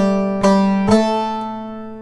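Bağlama (long-necked Turkish saz) plucked with a plectrum: three notes about half a second apart, the last left ringing and slowly fading.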